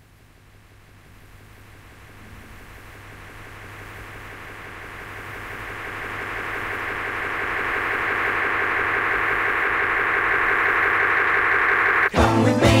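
Opening sound effect of a 1960s psychedelic pop record: a noisy, mechanical-sounding drone over a low hum, swelling steadily louder throughout. It breaks off at the very end as the band comes in.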